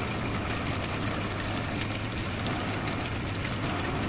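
A motor-driven buffing wheel spinning on a lathe spindle with a turned mango-wood mortar pressed against it for polishing: a steady hum under an even rubbing noise.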